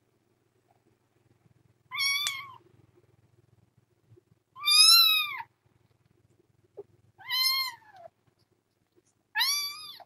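A kitten meowing four times, high-pitched calls each under a second long, spaced a couple of seconds apart; the second call is the loudest.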